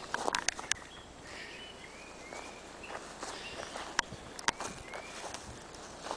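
Footsteps through dry roadside grass, with a few sharp ticks. Faint short rising bird chirps sound now and then in the background.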